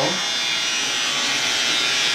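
Electric hair clippers buzzing steadily while they trim hair at the side of a man's head.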